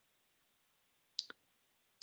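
Near silence with two short clicks close together a little over a second in.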